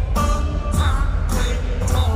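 Live hip-hop concert music played loud over an arena PA: a heavy bass and steady beat with a voice singing over it.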